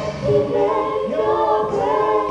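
A live band's vocalists singing a gospel song over steady held keyboard tones, with the drums and bass dropped out for a break in the arrangement.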